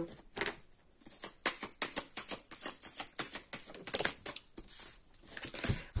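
Oracle card deck being shuffled by hand: a run of quick, irregular soft clicks and flutters of card on card for about four seconds, with a soft thump near the end.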